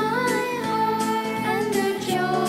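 Children singing a Christian worship song over instrumental backing, the melody gliding between long held notes.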